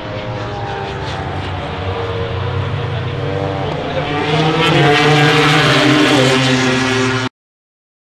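MotoGP racing motorcycles' four-stroke 1000 cc engines at racing revs, accelerating past, the pitch climbing and the sound growing louder about halfway through. It cuts off suddenly near the end.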